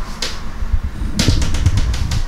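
Dull low thumps over a low rumble, with a short hiss about a quarter second in and a cluster of sharp clicks and rustling in the second half: handling and movement noise close to the microphone.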